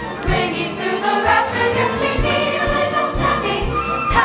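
Mixed choir singing a holiday song in harmony, with instrumental accompaniment and a rhythmic bass line beneath the voices.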